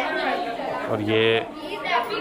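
Speech: a voice says a couple of words, with other people chattering around.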